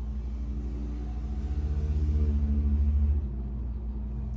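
A low mechanical rumble over a steady hum, growing louder for about two seconds and then cutting off suddenly a little after three seconds in.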